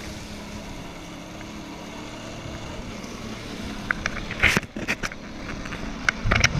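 Personal watercraft (jet ski) engine running steadily at low speed with a low hum. From about two-thirds of the way in, a run of sharp clicks and knocks rises above it.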